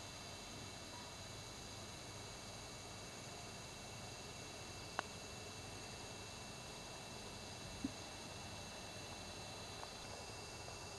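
Faint steady hiss of quiet outdoor background, with one sharp click about five seconds in and a short low blip near eight seconds.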